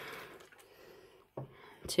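Water sloshing in a small plastic culture flask shaken to aerate a chlorella culture, fading away within the first half second. A single soft knock a little over a second in as the flask is set down on a wooden table.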